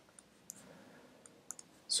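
A few faint, scattered clicks and taps of a stylus on a tablet screen as handwriting is added.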